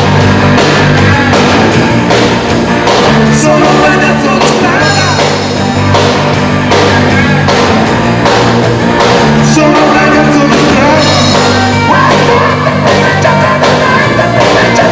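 A live rock band playing: electric bass and drum kit keeping a steady beat, with a man singing over them.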